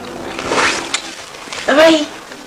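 A person's voice, indistinct, ending in a short, loud vocal sound near the end.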